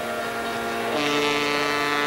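A steady drone of held tones. About a second in, a louder held low tone with overtones joins it, with a hiss above.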